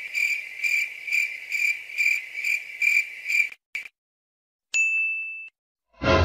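Cricket chirping sound effect, a high pulsing trill at about two chirps a second, used as the 'awkward silence' cue. It stops after about three and a half seconds, and after a short gap comes a single bright ding.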